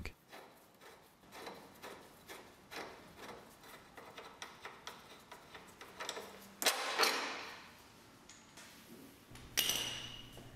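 Faint metallic clicks and light taps as a suspension bolt is worked out of the front diagonal link and control arm joint by hand, with a louder scrape lasting about half a second about seven seconds in.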